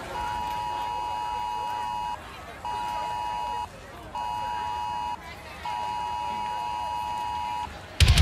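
A steady electronic beep tone sounds four times: a long beep of about two seconds, two one-second beeps, then another long one, each separated by about half a second.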